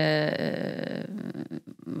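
A woman's voice holding the end of a word, then breaking into a rough, grunt-like vocal sound lasting about a second mid-sentence, followed by a brief breath.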